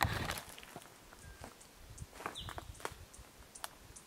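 Quiet, irregular footsteps and crunches over dry leaf litter, twigs and rock, with a single short high chirp a little over two seconds in.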